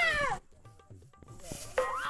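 A cat meowing twice: a loud, falling meow at the start and a second, rising-then-falling meow near the end.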